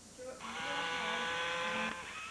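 Robotic frog toy's small speaker playing one long, steady electronic call. It starts about half a second in and lasts about a second and a half.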